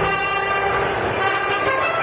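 Mariachi band playing, with trumpets holding long brass notes over the strings; the held chord changes about a second in.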